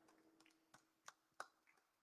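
Near silence, broken by three faint, short clicks in quick succession around the middle.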